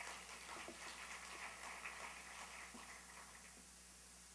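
Faint, scattered applause from a small audience that thins out and fades after about three seconds, over a steady low room hum.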